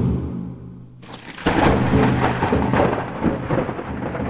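Thunder: a loud crack about a second and a half in, then a long rumble with scattered crackles, over a low steady drone.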